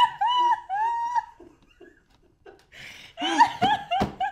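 A man and a woman laughing hard: a run of high-pitched, repeated laughs in the first second and a half, then another burst of laughter near the end.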